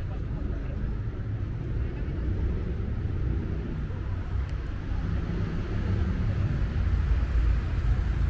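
City street traffic: a steady low rumble of passing cars that grows louder toward the end, with faint voices of passers-by.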